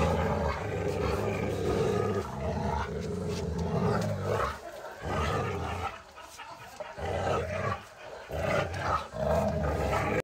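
A Boerboel mastiff growling deeply in long, rough bouts, with short breaks about halfway through and again near the end.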